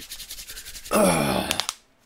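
A man laughing hard: a fast rattling wheeze, then about a second in a loud, high cry that falls in pitch.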